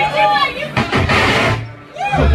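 Live rock band sound from the stage between songs: wavering tones that glide up and down over a steady low drone. About a second in, there is a short rush of noisy sound that cuts off.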